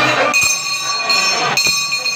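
A brass bell struck twice, about a second apart, with a high ringing that holds between strokes, over the noise of a crowd.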